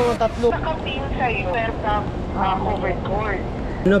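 Background music cuts off about half a second in, giving way to indistinct voices talking over steady traffic noise.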